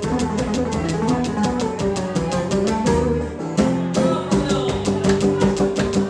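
Live Greek folk music: laouto lutes playing an instrumental passage over a fast, steady strummed beat, which breaks off for about a second around three seconds in before resuming.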